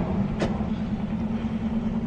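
Steady low rumble of an idling vehicle engine, with a single short click about half a second in.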